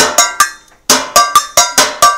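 A percussion break on homemade percussion instruments: quick, evenly spaced strikes, each with a short ringing tone. It dies away about half a second in and resumes just before the one-second mark at about six strikes a second.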